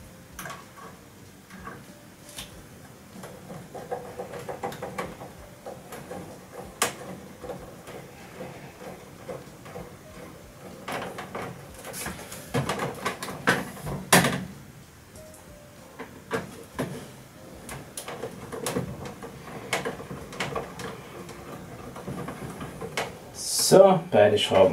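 Hand screwdriver driving in the front fastening screws of a boiler's plastic control-module housing: irregular small clicks, scrapes and knocks of metal on plastic. The loudest knocks come about 7 seconds in and again around 12 to 14 seconds in.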